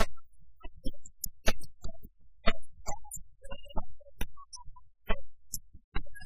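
Suzhou tanci performance: a pipa plucked in short, separate strokes under a woman's sung phrases.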